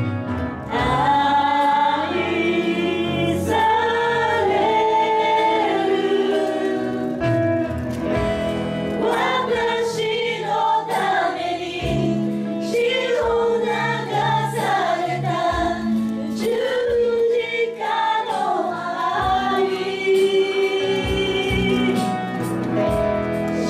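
Live Japanese praise-and-worship song: a woman sings the lead into a microphone, backed by a band with electric guitar and keyboard, the melody moving in held, sustained notes.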